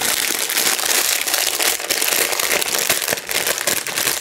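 Clear plastic bag crinkling continuously as it is handled, a dense stream of small crackles.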